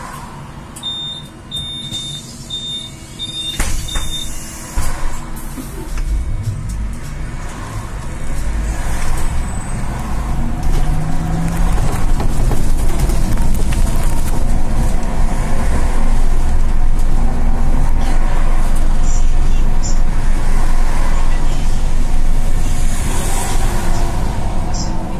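Solaris Trollino II 15 AC trolleybus heard from the driver's cab: a run of short high beeps and a clunk, then it pulls away. The rumble of the electric drive and road noise builds over several seconds and then holds steady.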